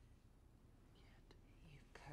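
Near silence: quiet room tone, with a faint breathy rustle and one soft click in the second half.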